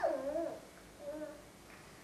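A toddler's wordless vocalizing: a short whining, gliding sound in the first half second, then a faint brief note about a second in.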